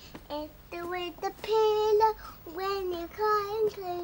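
A young child singing to himself unaccompanied, in several short phrases of held, wavering notes.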